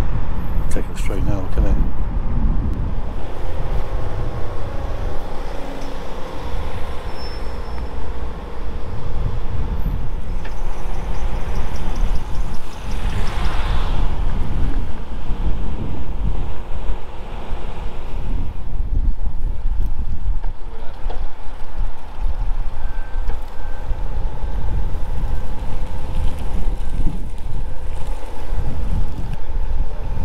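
Wind buffeting the microphone, a heavy fluttering rumble, with a faint steady engine hum underneath.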